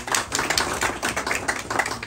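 Applause from a small audience: dense, uneven hand clapping that breaks off near the end.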